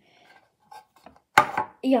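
A single sharp knock a little past halfway, as of a hard object knocked against the table, with faint handling rustle before it.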